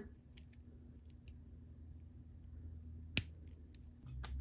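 Small plastic clicks from handling a toy doll bike while its plastic kickstand is fitted: a few faint ticks, then one sharp click a little after three seconds in.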